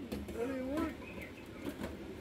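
A voice speaking briefly, with faint kitchen room noise and a few light ticks.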